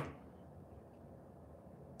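Faint, steady room noise with no distinct sound in it.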